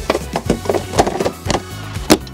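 A series of irregular knocks and rattles of a plastic grass-catcher bag being fitted onto the rear of a petrol lawn mower, over background music.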